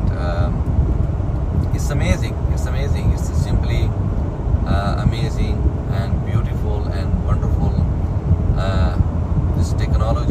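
Steady low road rumble of tyres and engines from a moving vehicle keeping pace with a heavy wrecker and its towed dump truck on a highway.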